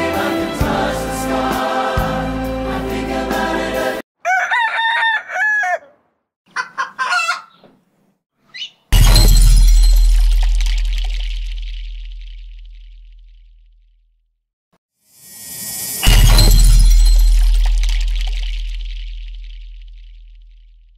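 Choir-like music with singing stops about four seconds in. A few short crowing calls like a rooster's follow, then two deep booming hits about seven seconds apart, each ringing down slowly over about five seconds.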